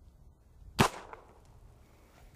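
A single shot from a .45 Colt single-action revolver about a second in: one sharp crack with a brief ringing tail. The shot knocks an aspirin tablet off the head of a nail.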